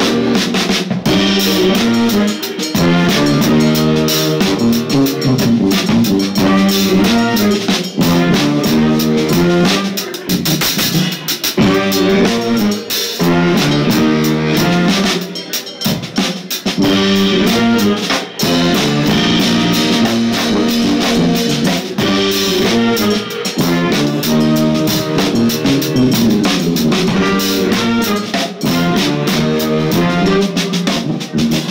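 Live klezmer-funk band playing: a sousaphone plays a repeating bass line over a drum kit.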